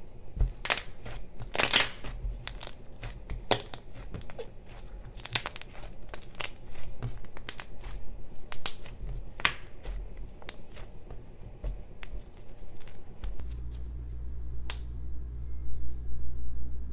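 Slime being squeezed, poked and stretched by hand, giving a run of sharp crackles and small snaps as it pulls and tears. The crackling thins out after about twelve seconds.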